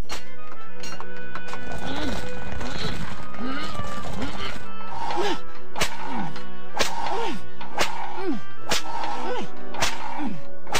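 Cartoon whip cracks, sharp and about once a second from about halfway in, over a steady musical score, with short grunts of effort in the same rhythm as the rope pulls.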